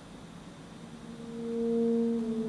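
Alto saxophone playing one soft, sustained low note that fades in from near silence about a second in and swells steadily louder.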